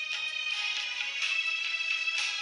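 Instrumental music with no singing, held tones played on an electronic keyboard.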